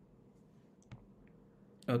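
Near silence with a single short click about a second in and a couple of fainter ticks after it, then a man says "okay" at the end.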